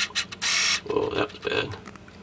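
Hand scraping and rubbing against metal parts inside a hot-water kick-space heater as the clip-on aquastat is worked onto its pipe: a few quick short scrapes, a longer hiss-like scrape about half a second in, then two shorter scrapes.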